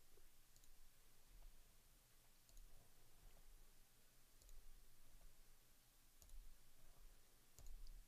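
Faint computer mouse clicks, a handful spaced one to two seconds apart, over a quiet room hum.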